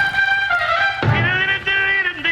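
Band music with brass playing long held notes; about a second in a new chord comes in together with a low drum or bass hit.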